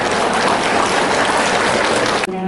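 Audience applauding, a dense, steady clapping at the close of a speech.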